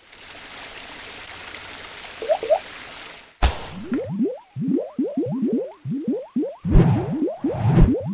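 Animated logo sound effects: a steady whooshing hiss for about three seconds, then a sudden hit followed by a quick run of short rising drippy plops, several a second, with splashy bursts near the end.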